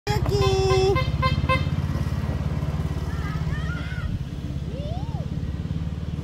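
A small utility vehicle's horn gives one long honk and then three quick short toots, over the steady, pulsing run of its engine. Faint voices follow.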